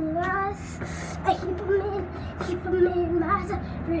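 A child singing a tune unaccompanied, with some notes held and others sliding up and down.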